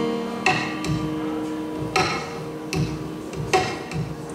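Live piano playing: a chord rings and sustains while sharp percussive hits land about four times, unevenly spaced.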